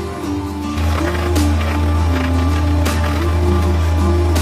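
Background music: a stepping melody over a steady bass, with a beat about every second and a half.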